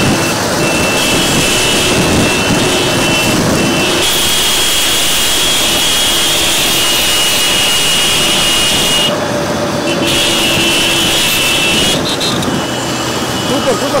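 Road noise from a car and a pack of motorcycles moving along together, with voices calling out and long, high, steady tones that come and go over it.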